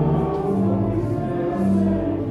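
A church congregation singing a hymn together, holding long notes that change pitch together.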